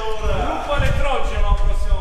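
Men's voices talking, with a low rumble underneath.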